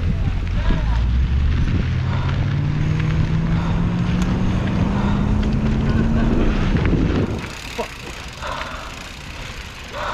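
Mountain bike riding on a dirt trail heard from a rider's camera: wind rumble on the microphone and tyre noise, with a hum that rises slowly in pitch over several seconds. The sound drops away suddenly about seven seconds in, leaving a quieter stretch with a few brief voices.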